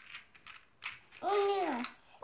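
A few light clicks of dry pasta and toy dishes being handled, then, just past a second in, one drawn-out voiced sound from a woman or small child, its pitch rising and then falling.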